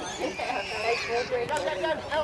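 Voices of players and spectators calling out on an outdoor football pitch, one of them a drawn-out high call that rises and falls over about a second near the start.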